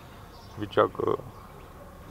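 A man says a word or two about a second in, over faint outdoor background with insects buzzing.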